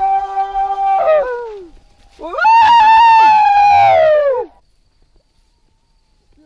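Kayapó voices in a field recording of chant: a long, held high call that falls away about a second in, then a louder high call that slides down in pitch and breaks off about four and a half seconds in.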